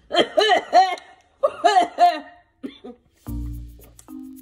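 A woman laughing and vocalizing in short rising-and-falling bursts as she reacts to the burning heat of a spicy snack. About three seconds in, background music with steady held notes comes in.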